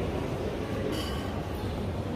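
A steady low rumble of station-hall noise, with a brief metallic clink about a second in.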